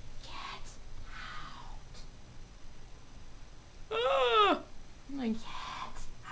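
A high, wailing, voice-like cry about four seconds in, lasting about half a second and falling in pitch at its end, then a shorter, lower cry a moment later. Together they are heard as a ghostly voice saying "get out". Faint breathy sounds come before and after.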